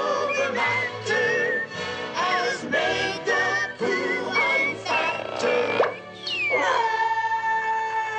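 Cartoon song: voices singing a lively tune over an orchestral accompaniment. Near the end a note slides down in pitch and is held.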